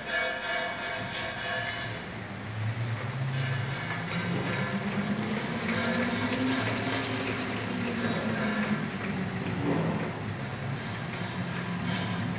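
ZP-9B rotary tablet press starting up: its electric motor and turret begin running about two seconds in, with a hum that rises in pitch and then settles into steady mechanical running.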